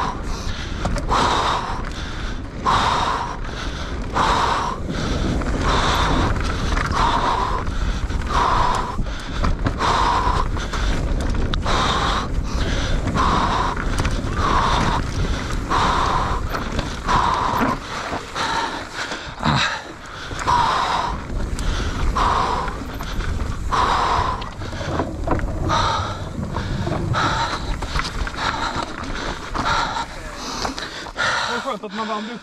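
A mountain biker breathing hard in a steady rhythm, about one breath every second and a half, over a constant low rumble of the bike rolling over a dirt trail.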